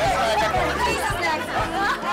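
Several people talking and laughing over each other, with background music with a steady beat underneath.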